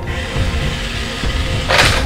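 Dramatic background music with a heavy low end, and a short burst of noise near the end.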